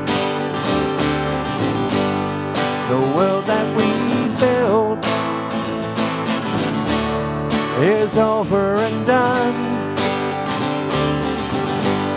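Acoustic guitar strumming and an acoustic bass guitar playing an instrumental passage of a slow song. A melody line with gliding, wavering notes comes in twice, about three seconds in and again about eight seconds in.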